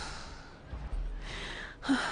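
A woman's soft breathing: a sigh trailing off at the start, then a short breath in near the end.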